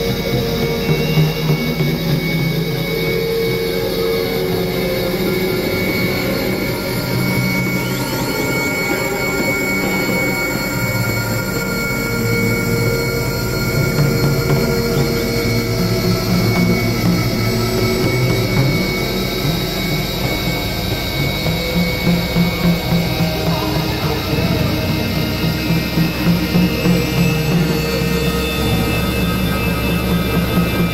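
Experimental electronic drone music: layered sustained synthesizer tones in a dense, noisy wash over a fluttering low end that pulses more strongly in the last third.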